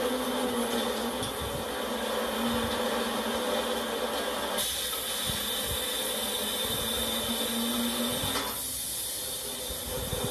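Industrial log-processing machinery, a rotating drum and chain conveyor, running with a steady mechanical hiss and hum. A high whine joins in about halfway through and stops shortly before the end.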